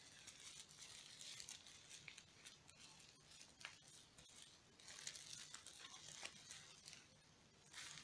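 Very faint crinkling and rustling of a thin clear plastic bag being handled and pulled open around a wristwatch, with scattered small crackles that grow busier near the end.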